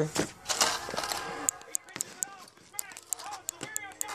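Hands rummaging through a soft fabric tackle bag's pouches, with rustling and a scatter of light clicks as gear is handled. Quiet talk is underneath.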